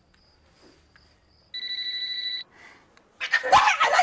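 A mobile phone gives a single steady electronic ring tone, just under a second long, about halfway through, after a few faint high beeps. Near the end a woman's voice breaks in loudly.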